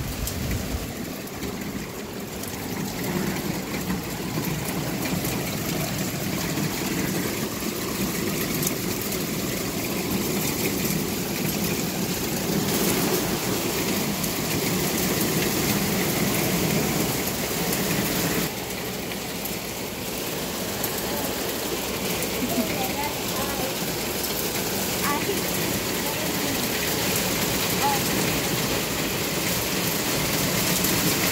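Small hail mixed with rain falling on a wooden deck and pergola: a steady, even hiss of pellets and drops that eases briefly about eighteen seconds in.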